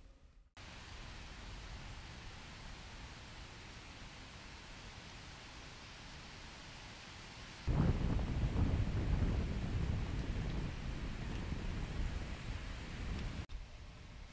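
Wind noise in the woods: a steady hiss, then about eight seconds in a louder, gusty low rumble on the microphone that drops away suddenly near the end.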